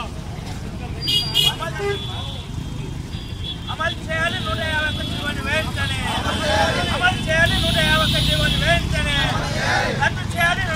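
Voices talking loudly over a steady low rumble of road traffic.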